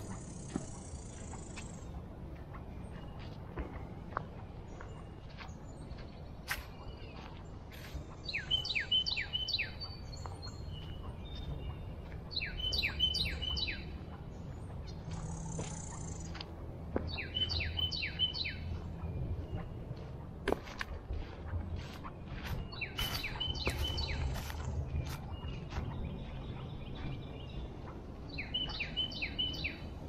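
A songbird singing a short phrase of about four quick, clear notes, repeated every four to five seconds. Under it are scattered light crunching footsteps on dry leaf litter and a low rumble.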